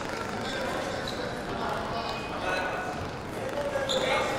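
Indistinct voices and general bustle of a busy competition hall, with a few light thuds of footsteps.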